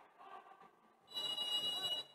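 A referee's whistle gives one steady, high blast of about a second, starting about a second in.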